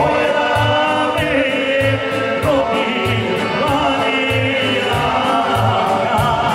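Live folk band playing: accordions and an electronic keyboard over a steady programmed beat, with male vocals singing through the PA.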